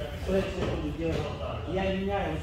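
Speech only: a voice talking, with no other sound standing out.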